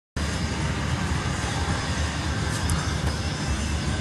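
Wind buffeting the microphone outdoors: a steady rushing noise with an uneven low rumble.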